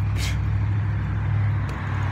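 A steady low mechanical hum with a brief hiss about a quarter second in.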